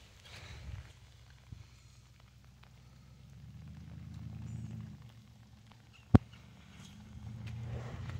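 Low, soft lowing from a calf that swells and fades between about three and five seconds in, over a low rumble. About six seconds in comes a single sharp knock.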